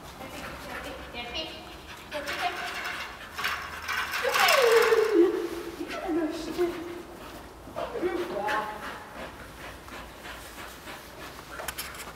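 A woman's voice giving high, excited calls, the loudest a long cry falling in pitch about four and a half seconds in, with a shorter call about eight seconds in.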